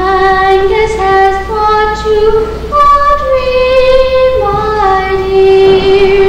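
A young girl singing solo, holding long, slow notes that step up and down in pitch.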